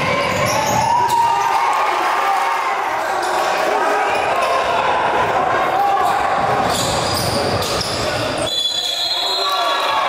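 Live gym sound of a basketball game: a ball dribbling on a hardwood court, with indistinct voices echoing in a large hall. The sound changes abruptly near the end.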